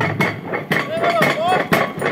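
Rapid, repeated hammer blows on a metal hammer-box machine, several strikes a second, with a voice or music in the background.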